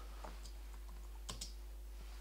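A few faint, sparse keystrokes on a computer keyboard as a name is typed, over a steady low hum.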